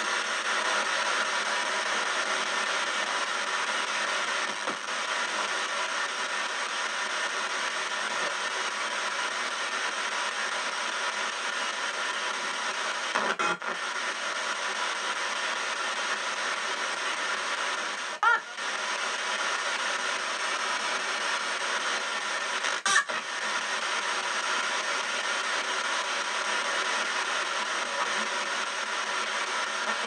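P-SB7 spirit box in reverse sweep, played through stereo speakers: a steady hiss of radio static as it scans stations. Three brief clicks or breaks in the static fall about halfway through and later on.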